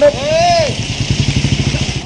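A motor vehicle engine running close by with a fast, even pulse, over a man's raised voice calling out about half a second in.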